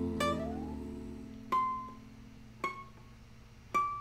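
Solo ukulele: a chord rings out and fades, then three single notes are picked about a second apart, each ringing briefly.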